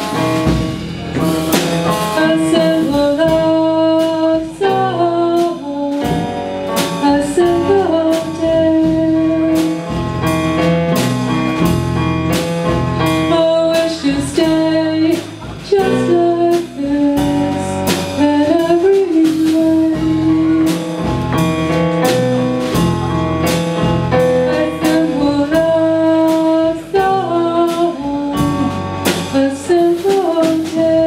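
Live band playing a pop-rock song: drum kit keeping a steady beat under bass, keyboard and electric guitar, with a sustained, bending melodic lead line over the top.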